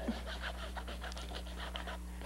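Faint, irregular scratching and rubbing of a sketching tool drawn across a stretched canvas, over a steady low electrical hum.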